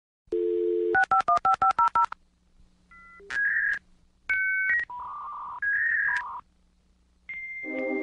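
Telephone line sound: a steady dial tone, then a quick run of about ten touch-tone (DTMF) dialing beeps, followed by a series of separate electronic beeps at different pitches. Near the end a steady high tone begins with lower tones under it.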